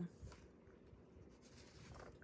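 Near silence with a faint rustle of paper as a printed insert is slid out from inside a hardcover book.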